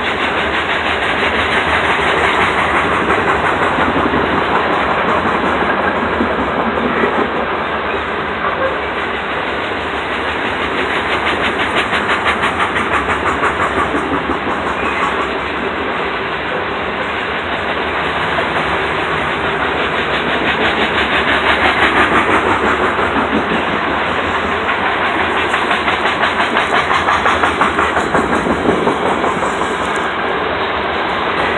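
Freight train of covered hopper cars rolling past: a steady rumble and rush of steel wheels on rail, with runs of quick rhythmic clicking as the wheels pass over rail joints, swelling and easing as the cars go by.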